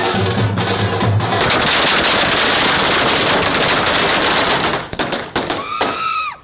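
Hand-beaten metal-shelled street drums in a fast rhythm, then about a second and a half in a long string of firecrackers goes off, crackling densely for about three seconds, with a few separate pops after it. Near the end a rising-then-falling tone sounds.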